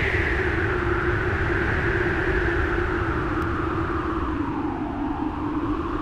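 Storm wind howling: a steady rush of noise with a whistle that slides down in pitch over about five seconds and then begins to rise again, over a low steady drone.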